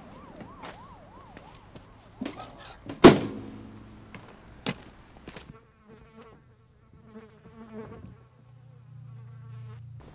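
A faint warbling buzz, rising and falling about three times a second, then an aluminium trailer door banging shut about three seconds in with a brief metallic ring. Faint chirping and a low hum follow.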